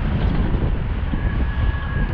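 Wind rushing over the camera microphone of a moving bicycle, with city traffic underneath. About a second in, a thin, steady high-pitched squeal joins for about a second.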